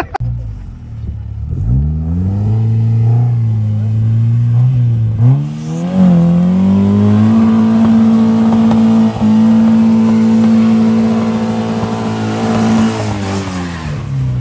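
Engine of a small open two-seater trials car climbing a steep, muddy, rocky hill section under load. The revs rise over several seconds, dip briefly and pick up again about five seconds in, then hold high and steady for about six seconds before dropping as the car passes close.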